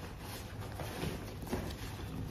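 Fabric rustling and a few light knocks as a large hiking backpack's top lid and straps are handled.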